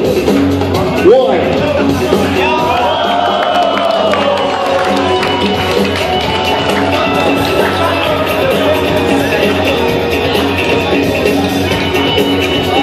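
Loud music played through a PA speaker, with voices and crowd noise over it.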